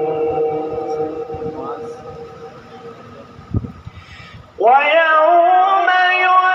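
Male Quran recitation in maqam Saba through a PA system: a long held sung note fades out over the first few seconds, a low thump comes about three and a half seconds in, then the reciter's voice starts again with a rising note that settles into a held, ornamented line.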